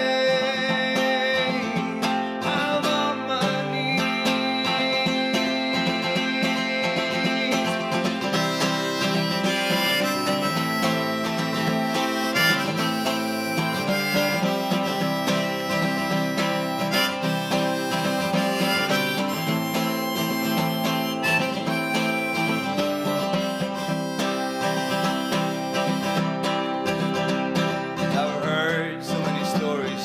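Harmonica played in a neck rack, carrying the melody over a strummed acoustic guitar in an instrumental break of a folk song.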